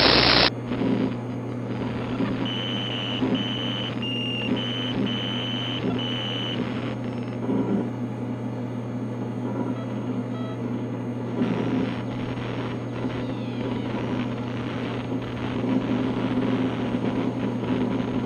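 Outro sound effects: a short, loud burst of static, then a steady electronic hum with crackle. Six short high beeps come between about two and six and a half seconds in.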